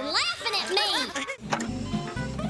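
Cartoon sound effects: a run of quick rising and falling squeaky glides, then music with a low bass line starting about one and a half seconds in.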